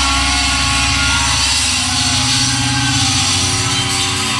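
Live heavy metal band playing loud, with distorted electric guitars and bass holding steady, droning low notes.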